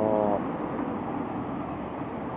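City street traffic: a steady rush of cars moving along the boulevard, with one car passing close by.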